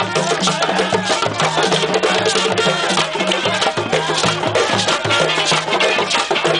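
Live street band playing West African-style percussion on djembe drums, with brass horns, over a repeating low bass figure; dense, fast drum strokes run throughout.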